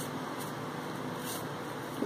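Steady background hiss, like a fan or air conditioner running. Faint brief rustles come at the start and again just past a second in, as the silver-leaf sheet is handled.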